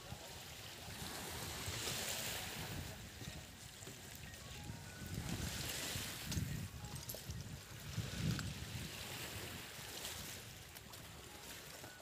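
Outdoor wind buffeting the microphone in uneven gusts over the wash of small waves on a shoreline.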